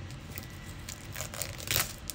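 Clear plastic shrink-wrap being torn and peeled off a paperback book, crinkling in irregular crackles, with a louder crackle near the end.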